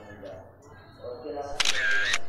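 Smartphone camera shutter sound, one short sharp burst about a second and a half in, as a posed group photo is taken. Faint chatter before it.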